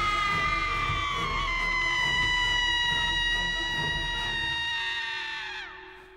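A long, shrill scream from a horror film, held for several seconds, slowly sinking in pitch and trailing off near the end, over a low rumbling score.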